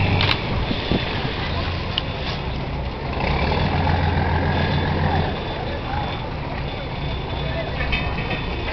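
A large engine running with a low, steady hum that swells for a couple of seconds in the middle, over the background murmur of people's voices.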